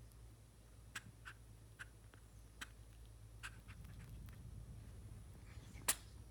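A gray squirrel grooming itself: faint, scattered little clicks and ticks of licking and nibbling at its fur and paws, with one louder sharp click near the end as it opens its mouth.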